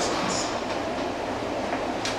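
Steady background hiss of room noise in a pause between spoken phrases, with the tail of a spoken word at the very start.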